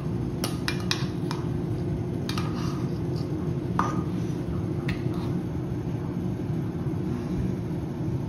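Metal measuring spoon clinking against a baking soda container as a teaspoon is scooped out: about seven light, sharp clicks in the first five seconds, over a steady low background hum.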